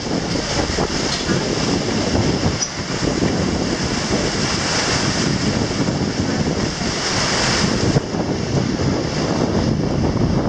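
River current rushing and splashing against the hull of a reaction cable ferry, with wind buffeting the microphone. The rushing is steady and grows brighter for a few seconds in the middle.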